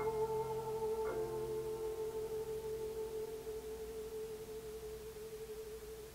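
Closing of a recorded song: a held chord with a wavering pulse, one soft note entering about a second in, slowly dying away until it is gone just at the end.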